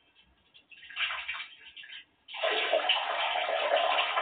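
Water running in a bathroom: a couple of short, uneven spurts, then a steady full flow from a little over two seconds in.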